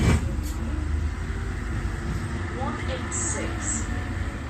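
Steady low rumble of a moving road or rail vehicle heard from inside, with one sharp knock right at the start.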